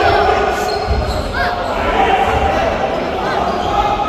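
Indoor volleyball rally: sneakers squeaking on the hall's court floor a couple of times, under a steady din of players' and spectators' voices echoing in the sports hall.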